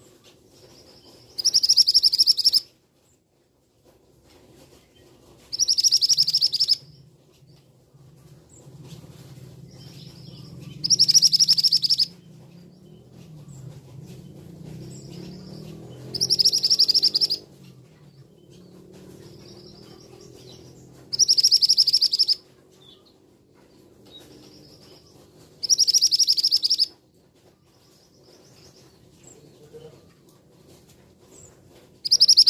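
A caged male scarlet minivet calling: six loud, high-pitched calls, each lasting about a second, repeated about every five seconds.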